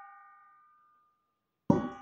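A metal pot ringing after being knocked against a person's head: a clear bell-like tone of several pitches fading away over about a second, then a second knock near the end sets it ringing again.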